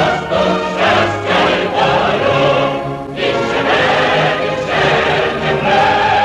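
A choir singing a Ukrainian song, with the line "Рве за поступ, щастя й волю" ("Makes it rush for progress, happiness and freedom"). There is a short break between phrases about three seconds in.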